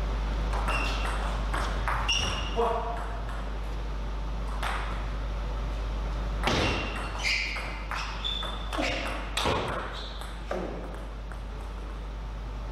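Table tennis ball being played back and forth in rallies: a quick run of sharp clicks as the celluloid ball strikes the bats and the table, busiest in the second half.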